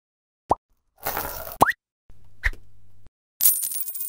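Sound effects of an animated TV-channel logo intro. A short rising pop comes about half a second in, then a brief hiss ending in another rising pop, then a low hum with a click in the middle, and a bright shimmering burst near the end.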